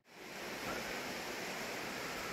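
Steady rushing noise with no distinct events, fading in over the first half second.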